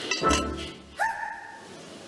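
Cartoon sound effect of a metal serving cloche being lifted off a plate: a short clink with a low thud, then about a second in a bright ringing ding that slides up slightly, holds briefly and fades.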